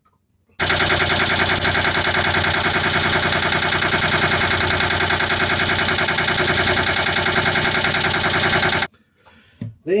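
Volvo Penta 2003 three-cylinder marine diesel running at a steady idle with a fast, even knocking pulse, starting abruptly about half a second in and cutting off abruptly shortly before the end.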